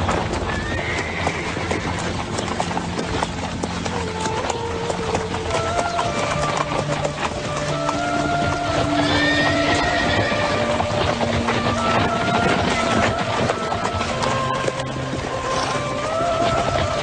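Horse hooves clopping, with a horse whinnying, over a film score of held notes.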